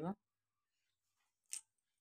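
A woman's word ending, then a quiet small room broken once, about a second and a half in, by a short sharp click.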